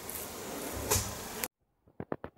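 Outdoor ambience: a steady faint hiss with one soft thump a little under a second in, then the sound cuts off abruptly into silence.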